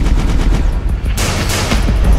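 Intro sting of heavy bass music with gunfire sound effects: a rapid burst of shots in the first second, then three louder single shots.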